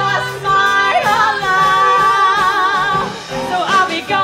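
A woman singing a musical theatre song over a live band, holding one long note with vibrato from about a second in until about three seconds in.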